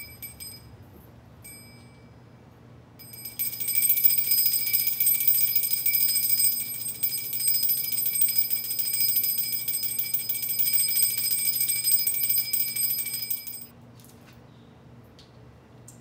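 Puja hand bell (ghanti) rung: two short rings at the start, then a fast continuous ringing of the clapper for about ten seconds that stops abruptly.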